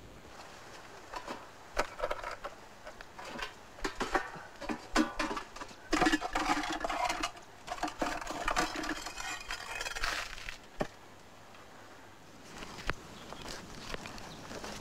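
Irregular clattering and knocking of small hard objects being handled, densest in the middle, followed by a few single knocks near the end.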